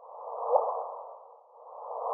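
LIGO gravitational-wave signal from two merging black holes played as sound: hiss with one short chirp rising in pitch about half a second in. The rising pitch is the sign of the two black holes spiralling closer together ever faster. The hiss starts afresh about a second and a half in.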